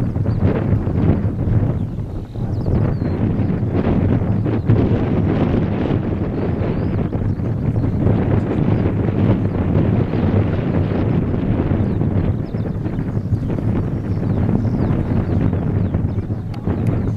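Wind buffeting the camera microphone: a loud, gusting low rumble that swells and dips throughout.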